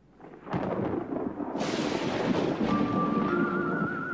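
Thunder rumbling, joined by a rain-like hiss about a second and a half in. Eerie music with a wavering high tone comes in during the second half.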